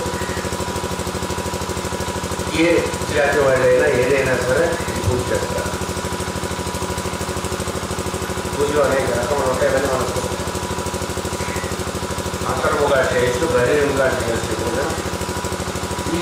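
A man speaking through a microphone and PA system in three short stretches, over a loud steady electrical hum and buzz that continues unchanged through the pauses between his phrases.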